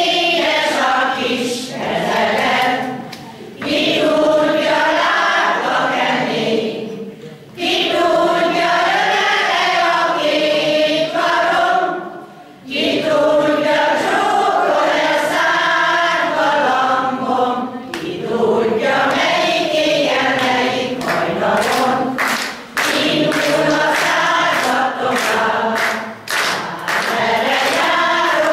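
An amateur folk-song choir of older singers singing together in sustained phrases, with short breaks for breath every four to five seconds.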